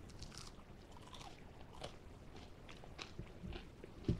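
A person faintly chewing a bite of a crispy-breaded Impossible (plant-based) chicken nugget, with irregular small crunches from the breading.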